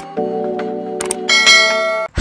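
Intro sound effects over a held music chord: a single mouse click about a second in, then a bright bell chime that keeps ringing, the notification-bell sound of an animated subscribe button.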